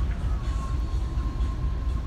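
Wind buffeting the phone's microphone on an open ship deck: a loud low rumble that wavers constantly.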